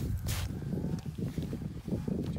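Low wind rumble on the microphone, with a short rustling scuff about a third of a second in and a few faint clicks.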